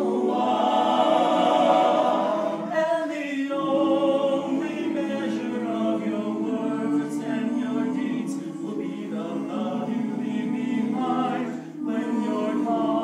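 Small men's vocal ensemble singing a cappella in close, sustained harmony, with a brief break near the end.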